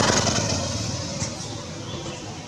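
A motor vehicle's engine running, loudest at the start and easing off a little.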